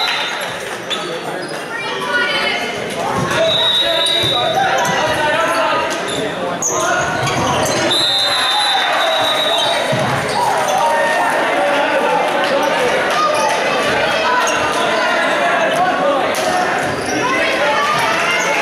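Indoor volleyball game in an echoing gym: players' shouts and calls and crowd chatter, a ball bouncing, and two long, steady referee whistle blasts, about three and a half seconds in and about eight seconds in.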